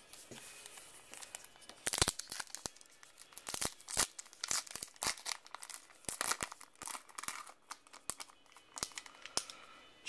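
Baseball card pack's heat-sealed wrapper being torn open and crinkled by hand: a run of irregular sharp crackles and tearing.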